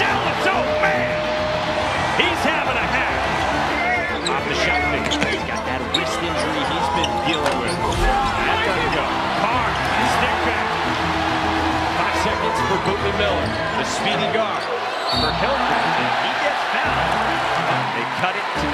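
Basketball game sound: a ball bouncing on a hardwood court with voices from the arena, over background music.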